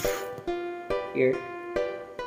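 Background music played on a plucked string instrument, with a new note about every half second.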